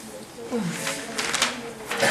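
Indistinct conversation among several people in a room, voices overlapping.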